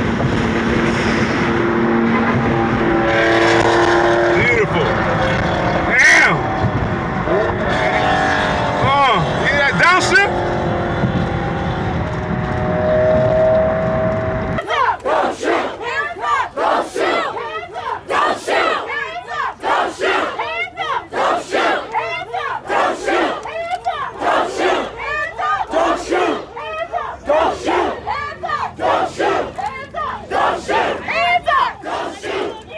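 Road and engine noise heard from inside a moving car. About halfway through it cuts to a crowd chanting and shouting, led by a voice through a megaphone.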